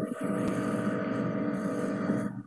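Steady electrical hum and buzz on the audio line, with many overtones, starting abruptly and holding at an even level.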